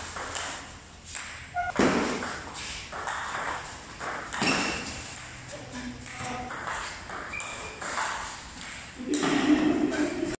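Table tennis ball pinging off the paddles and table during a rally, with voices in the hall; a louder stretch comes near the end.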